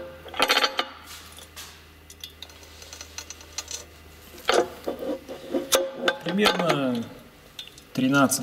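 Hand-operated aerosol can filling machine being pressed down repeatedly, with metal clicks and rubbing from the filling head on the can's valve as the piston pushes paint into the can in portions. A low steady hum runs underneath until near the end.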